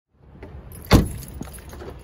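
A car door shutting with one loud thump about a second in, followed by a few light clicks over a low outdoor rumble.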